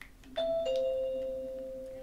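Google Assistant smart speaker answering a "Hey Google" command with a two-note falling chime. A higher tone sounds about a third of a second in and a lower one just after, and both ring on and fade slowly.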